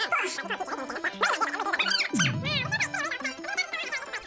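Fast-forwarded video audio: voices sped up into high-pitched, garbled chatter over music, with a low falling swoop about halfway through.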